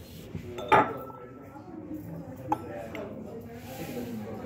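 Glassware clinking twice, a hard object knocked or set down on glass: a loud clink less than a second in that rings briefly, and a lighter one about two and a half seconds in.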